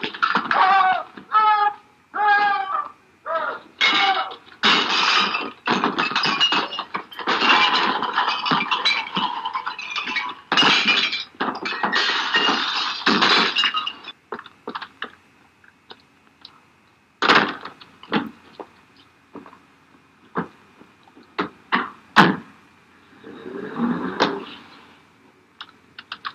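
A fight and the wrecking of a shop: shouts near the start and a run of crashing, breaking and thudding for about fourteen seconds. After that come only scattered knocks and thuds.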